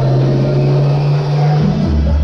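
Loud show music played over a sound system, with a deep sustained bass note that drops lower near the end.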